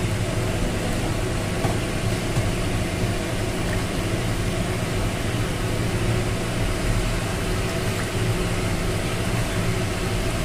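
A steady hum with an even hiss, like a running machine or fan, holding level without any distinct knocks.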